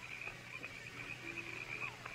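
A faint night-time sound-effects bed for a radio drama: a steady, rapid high chirping of night creatures, with a few soft held notes of distant music.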